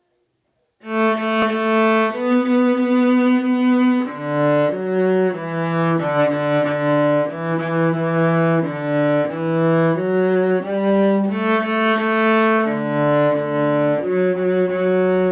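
Solo cello, bowed, starting about a second in with two long held notes, then a run of shorter notes at about two a second, stepping between a few pitches in a simple beginner's tune.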